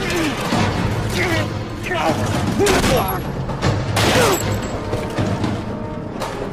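Film battle soundtrack: men shouting and yelling over music and a low rumble, with two short bursts of gunfire, about three and four seconds in.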